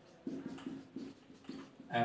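Marker pen writing on a whiteboard: a run of short, faint squeaks about every half second as the letters are drawn. A man's voice starts up near the end.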